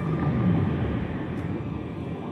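Underwater sound design in a TV drama's mix: a steady, deep, muffled rumble with no clear pitch.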